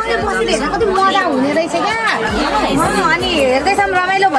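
Speech only: women talking, with several voices overlapping in lively chatter.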